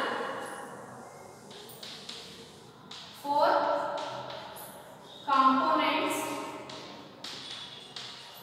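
Chalk tapping and scratching on a blackboard as words are written, in short sharp clicks, with a woman's voice speaking twice, about three and five seconds in.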